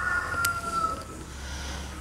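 A faint, distant animal call, one long held note that falls slightly and fades out about a second in. A low steady hum runs under it, and there is a single click near the middle.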